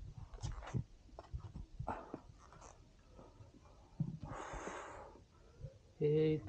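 A trekker breathing on the climb, with one long breath out about four seconds in, and a few light footsteps on rock before it.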